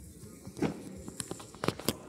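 A few sharp knocks and clicks in the second half, the loudest two close together near the end.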